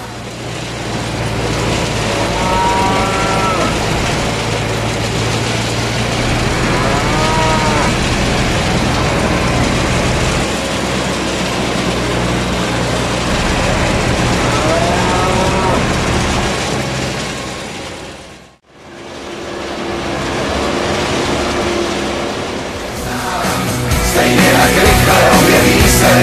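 Cows lowing at a feed barrier: three drawn-out moos a few seconds apart, over a steady low mechanical drone. The sound breaks off briefly about three-quarters of the way through, and music comes in near the end.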